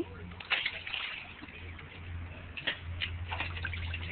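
Water sloshing and splashing as two Pembroke Welsh Corgis move about in a shallow kiddie pool, with a few short, sharp splashes.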